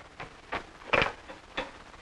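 A few short knocks and clicks, the loudest about a second in, as a desk telephone's handset is picked up and lifted to the ear.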